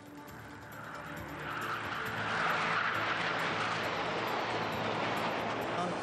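Jet engines of the Turkish Stars' NF-5 fighter formation passing by: a rushing jet noise that builds over the first two seconds and stays loud until near the end.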